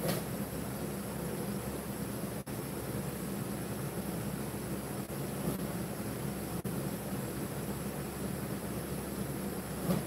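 Electric fans running: a steady whir with a low motor hum underneath.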